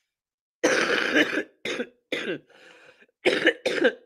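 A person coughing in a fit: one long, harsh cough about half a second in, then four shorter coughs in quick succession.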